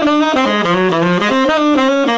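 Tenor saxophone playing a flowing jazz phrase of quick eighth notes, tonguing the upbeats and slurring into the downbeats (mainstream articulation).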